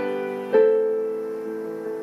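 Solo piano playing slow chords, one struck at the start and another about half a second in, each left ringing and slowly fading.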